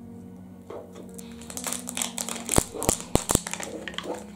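Plastic wrapping on a LOL Surprise Lil Sisters toy ball crinkling as it is peeled open by hand, with a few sharp clicks in the second half. Faint background music runs underneath.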